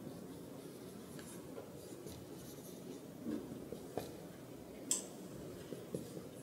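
Marker pen writing on a white board, its strokes faintly scratching across the surface. Two short, sharp taps break in, one about four seconds in and a louder one near five seconds.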